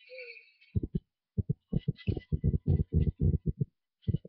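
A quick, uneven run of about fifteen soft, low thumps, starting about a second in and stopping just before the end.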